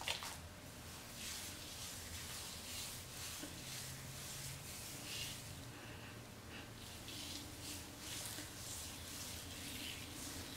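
Faint soft rustling and squishing of fingers working styling-foam mousse through curly hair, with quiet sniffs as the product is smelled on the hand.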